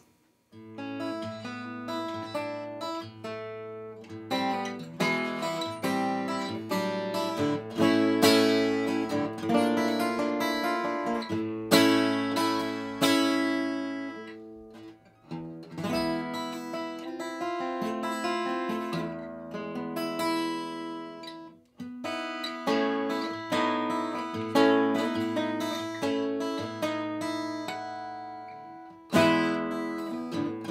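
Breedlove Legacy Concertina E, a small-bodied 12-fret parlor acoustic guitar with a solid Sitka spruce top and cocobolo back, played solo with a mix of fingerpicked notes and strummed chords. The music breaks off briefly a few times, near the middle and again shortly before the end.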